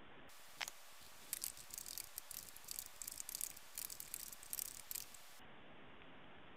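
Faint, irregular tapping of a computer keyboard being typed on, with a few sharper clicks, over a light hiss.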